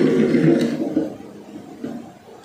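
Small plastic-wheeled toy car rolling across a hard tabletop, pushed by hand: a low rumble that fades out after about a second.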